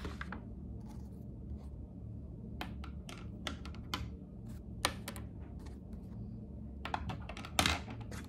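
Notebook pages being turned and pens and markers being picked up and set down on a desk: scattered short rustles, taps and clicks, the loudest one near the end, over a steady low hum.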